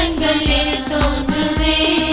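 Devotional song: a held sung melody over a steady low drum beat of about two strokes a second.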